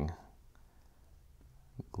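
A short lull of quiet room tone, with two small sharp clicks near the end.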